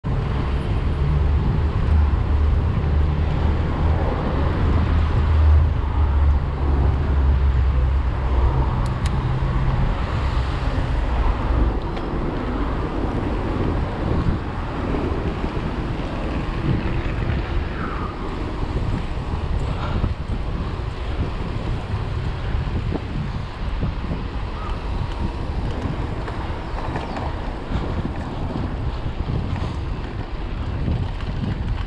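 Wind buffeting the microphone of a camera on a moving bicycle, with city car traffic alongside; the low wind rumble is heaviest for the first twelve seconds or so, then eases to a lighter steady rush.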